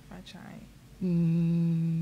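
A person humming one long, level "mmm" that starts about a second in, after a quiet moment with faint murmuring.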